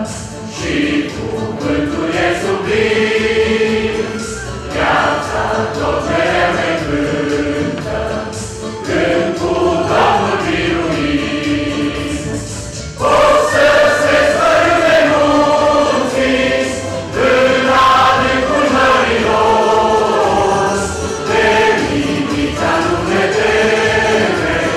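Mixed choir of men's and women's voices singing sustained, held chords, growing clearly louder about halfway through.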